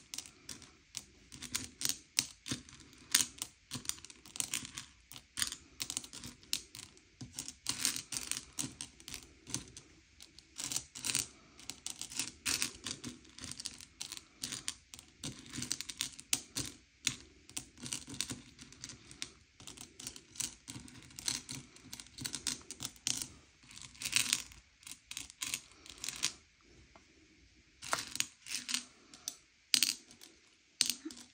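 M&M's candies clicking and rattling against one another and the bowl as fingers push and sort them: a steady run of small, irregular clicks, with a brief lull near the end.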